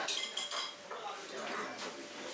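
Dishes and cutlery clinking, with a few short ringing clinks about half a second in, over the chatter of voices in a restaurant.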